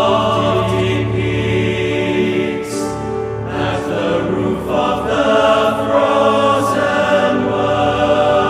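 Boys' choir singing held chords in several parts, changing to new chords about three and a half seconds in, with the brief hiss of sung 's' sounds now and then.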